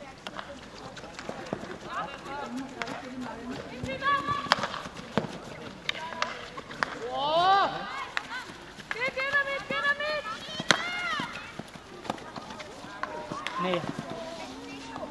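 Players' high-pitched shouts and calls across a field hockey pitch, several in a row with the loudest about halfway through, over frequent sharp clacks of hockey sticks striking the ball.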